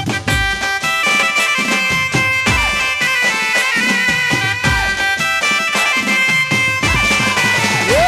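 Live garba music: a sustained, reedy melody over a drone, played on a Roland XP-60 synthesizer keyboard, with a beat of drum strokes underneath.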